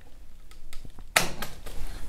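Handling noise from a phone camera being picked up and carried: a few light clicks, then a short loud rustling whoosh just over a second in.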